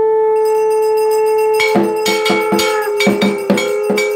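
Conch shell (shankha) blown in one long steady note that dips slightly in pitch near the end. About a second and a half in, a hand bell starts ringing in rapid strokes, about six a second, over the conch.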